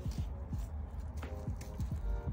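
A few faint, light knocks and rustles from a gloved hand handling a rubber oil cooler line, with faint background music.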